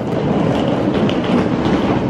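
Small wheels of a hard-shell wheeled suitcase rolling over a paved platform: a loud, continuous rattling rumble.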